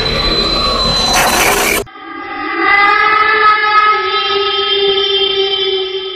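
Horror-intro sound effects: a noisy rushing swell that peaks in a bright hiss and cuts off abruptly about two seconds in, then a steady, sustained horn-like drone.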